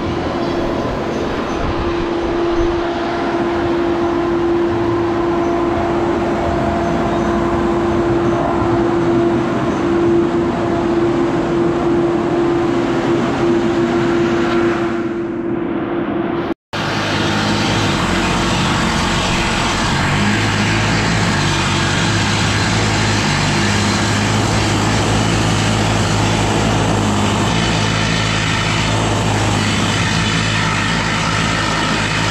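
Loud, steady machinery noise with a constant hum. About halfway through it cuts to a different steady drone with a deeper hum.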